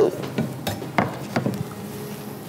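Bowls knocking lightly as raw seafood, prawns among it, is tipped from small serving bowls into a large mixing bowl. There are a few separate sharp knocks about a second in.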